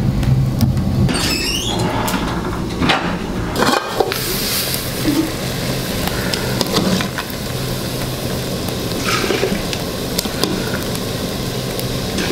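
Cooking at a wood-fired stove: a steady rushing noise from the steaming pot and fire, broken by scattered clicks and knocks of metal pots and utensils. A low hum sounds in the first two seconds and then stops.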